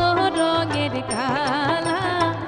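Bangladeshi folk (baul) ensemble playing an instrumental passage with a dotara: held melody notes with wide vibrato over a steady drone and a light regular beat.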